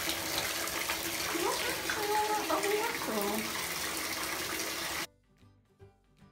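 A bath tap running into a bathtub, a steady rushing of water, which cuts off suddenly about five seconds in.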